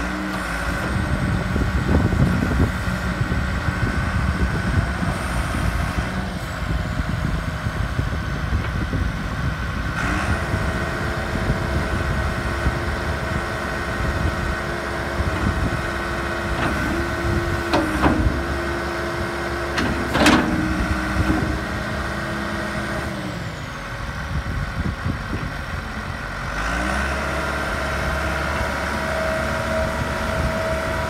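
John Deere 444G wheel loader's diesel engine running: its speed rises about a third of the way in, as the boom lifts the bucket, and drops back toward idle later on. A few sharp knocks come partway through.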